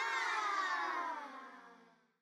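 A baby's cry: one long wail that wavers at first, then falls slowly in pitch and fades out.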